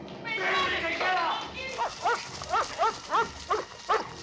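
Voices for the first second or so, then a small dog yapping rapidly, short high barks at about four a second.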